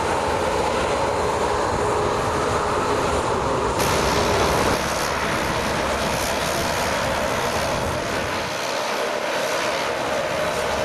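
Airliner engines running at taxi power: a steady rushing whine, first from a Boeing 737-800 jet, then, after an abrupt change about four seconds in, from a Saab 340 turboprop.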